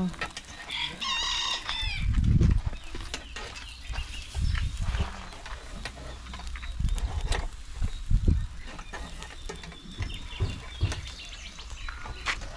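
A rooster crows once, about a second in. Scattered metallic clicks of skewers being turned on a charcoal grill follow, with a few low thumps.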